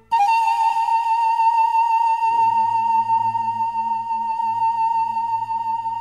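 Pan flute playing one long held high note with vibrato, starting abruptly, over a soft low accompaniment that comes in about two seconds in.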